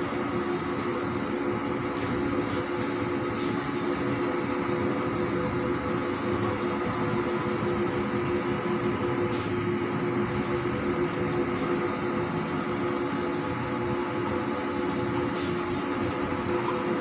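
A K-Jet large-format banner printer running while it prints: a steady hum and whir from its motors and the row of fans under the print bed, with a few faint clicks.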